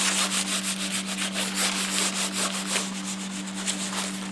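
A cloth being scrubbed back and forth over a textured vinyl board, wiping sawdust off the freshly sawn vinyl with solvent, in quick repeated strokes. A steady low hum runs underneath.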